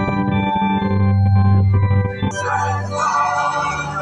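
Organ music playing slow, sustained held chords.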